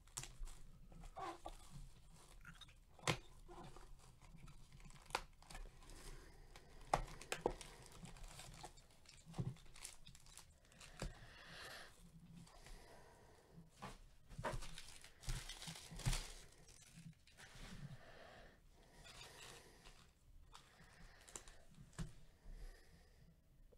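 A cardboard trading-card hobby box being opened and its foil card packs handled: crinkling and tearing of the packaging, with sharp taps of packs and box against the table throughout and longer bouts of crinkling in the second half.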